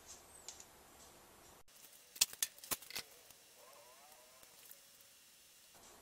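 Low room tone broken by a quick cluster of about six sharp plastic clicks over roughly a second, from a power cable's plug and the display units being handled.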